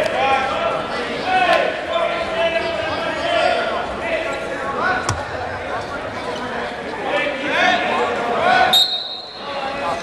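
Several voices shouting over one another in an echoing gymnasium, spectators and coaches calling to the wrestlers on the mat. Near the end comes a steady, high whistle blast about a second long, the referee's whistle.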